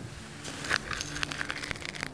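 Sand poured from a bucket into a plastic bucket, a gritty hiss with many small ticks of grains landing, starting about half a second in.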